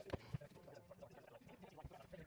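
Two light knocks of MDF panels bumping in their joints as a dry-fitted cabinet carcass is handled, a fraction of a second apart near the start, over faint background noise.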